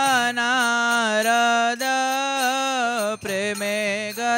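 Devotional kirtan singing: a voice holding long, ornamented notes that bend in pitch over a steady drone.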